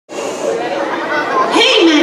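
Chatter of many voices in a large, echoing room, with one voice coming through louder near the end.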